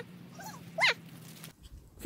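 A small dog gives one short, high whine a little under a second in.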